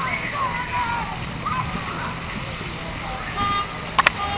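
Outdoor street ambience: indistinct voices of passers-by over a steady low hum of traffic. A brief pitched tone, like a short horn toot, sounds near the end, followed by a sharp click.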